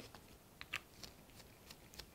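Faint small clicks and crackles of gloved hands handling a small plastic squeeze bottle of paint and its cap, the crispest click about three quarters of a second in.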